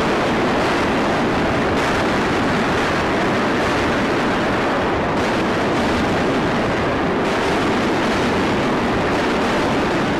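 A loud, steady roaring rush of noise with no separate blasts, shifting slightly in texture about two, five and seven seconds in.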